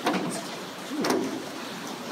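The flip-up rear glass hatch of a 1975 AMC Gremlin being unlatched and lifted open. There is a sharp click right at the start and another about a second in.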